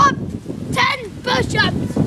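A boy's short, high-pitched vocal yelps, about three in quick succession, as he runs across leaf litter, with low wind rumble on the microphone.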